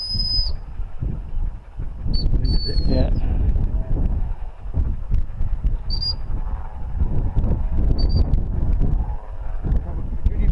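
Gundog training whistle blown in a series of single high blasts: a longer one at the start, a short pip and a longer blast around two to three seconds in, then short pips near six and eight seconds, as the handler directs a dog. Wind rumbles on the microphone throughout.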